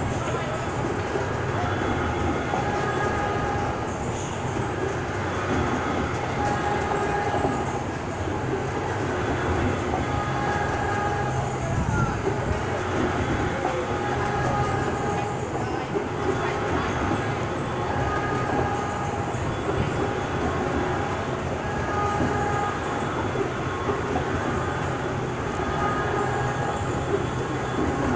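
Carousel running: a steady mechanical rumble from the turning platform and its drive, with faint held tones coming and going over it.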